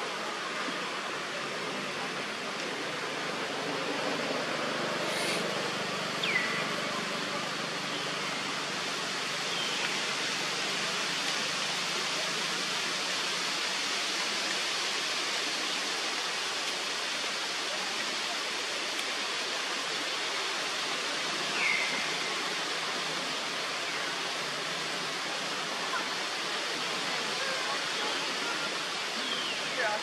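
Steady, even outdoor hiss of forest ambience, with a few faint, short falling chirps: one about six seconds in, one past twenty seconds and one near the end.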